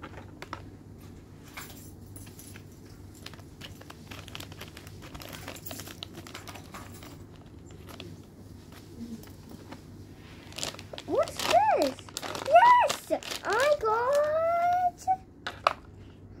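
Faint crinkling and rustling of a plastic blind-bag packet being handled and opened. About eleven seconds in, a child's high voice makes wordless sliding, swooping sounds for a few seconds, louder than the crinkling.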